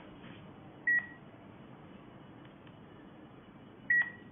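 Variantz iData A25T handheld QR-code scanner and thermometer giving two short, high beeps about three seconds apart. The first confirms a QR code read and the second a wrist temperature reading.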